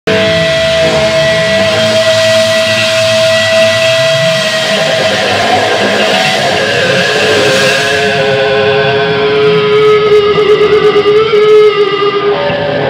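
Electric guitars through amplifiers and effects, sustaining long, wavering held notes with no drums, at the close of a progressive rock song. About halfway through, the main held note drops to a lower pitch.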